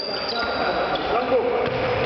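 Indoor futsal game in a large sports hall: trainers squeaking on the court floor, the ball being played, and players' indistinct shouts, all echoing.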